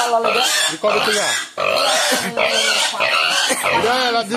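Piglet squealing loudly and repeatedly as it is grabbed and held by the legs, a run of long high squeals with short breaks.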